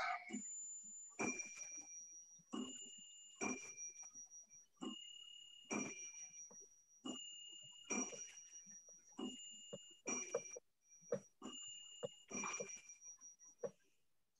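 Faint high two-note chirp, a higher note then a slightly lower one, repeating about every two seconds, six times over.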